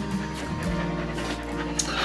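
A whippet panting, with a few quick breaths, over background music with steady held notes.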